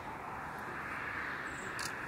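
Steady outdoor background noise, a wide even hiss and rumble, with one short sharp click near the end.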